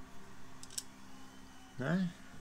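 Two faint clicks from a plastic wiring connector being handled, over a faint steady hum.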